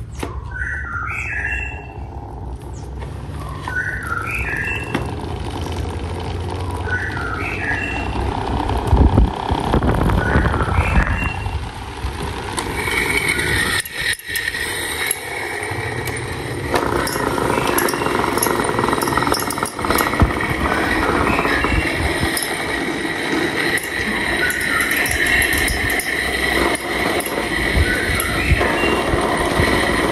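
Small electric desk fans running with a steady whir and a high-pitched whine. The sound thickens about two-thirds of the way in, as another fan is switched on.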